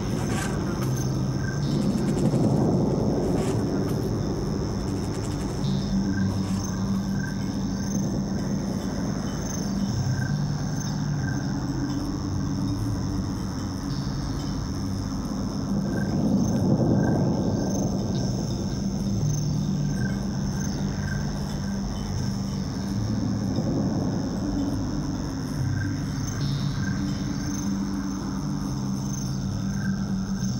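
Slow ambient background music of low held notes that shift pitch every second or two, with faint high chirps recurring throughout.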